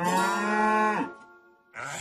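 A cow's moo sound effect: one long call that rises at the start, is held for about a second, then dies away. A steady rushing noise starts near the end.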